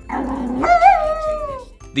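A Japanese Chin giving one long vocal call that wavers and then falls in pitch, after a short rough, noisy start. Background music runs under it.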